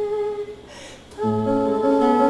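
A long held sung note ends about half a second in; after a short pause, a nylon-string classical guitar, plugged straight into an amplifier, comes in with plucked notes a little past a second in.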